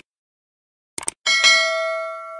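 A quick pair of mouse-click sound effects about a second in, followed at once by a bright bell chime that rings on and slowly fades, the notification-bell sound of a subscribe-button animation.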